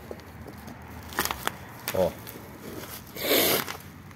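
Handling noise: a few light clicks, then a short, loud crinkle of plastic bubble wrap a little after three seconds in.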